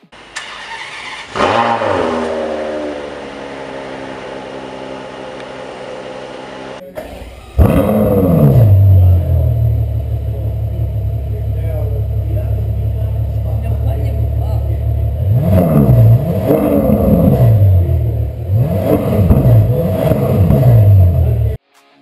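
Ferrari 599 GTO's V12 starting and running: first an engine note falling and settling toward idle, then a second loud start-up with a rev flare. It drops into a steady idle and ends with several sharp throttle blips.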